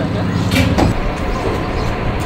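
Steady low rumble of a running vehicle or ride machinery, with people's voices over it.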